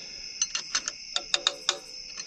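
A quick run of sharp, irregular metallic clicks and clinks from a wrench working the spring-loaded idler tensioner on a truck's serpentine belt drive. Crickets chirr steadily behind.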